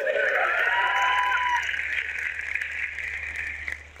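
Audience laughing and applauding, dying away near the end.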